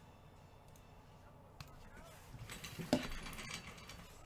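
Rustling handling noise with one sharp knock about three seconds in, as equipment on the tabletop is picked up and moved.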